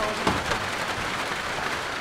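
Rain falling, a steady even hiss.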